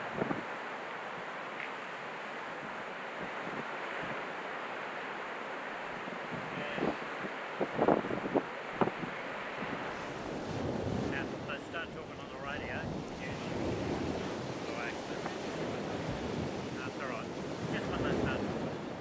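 Wind blowing on the microphone over the steady sound of surf, with a few sharp knocks about eight seconds in.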